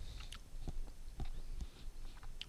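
Faint, irregular wet mouth clicks of someone chewing a soft gummy lolly.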